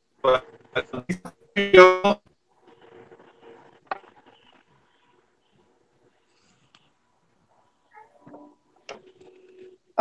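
A person's voice coming through a video call badly broken up: loud, choppy bursts of distorted, unintelligible speech and a laugh in the first two seconds, then only faint, broken fragments with long dropouts. The garbling is the sign of a poor call connection.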